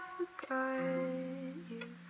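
A soft ukulele chord plucked about half a second in and left ringing as it fades, with a low hummed note held beneath it.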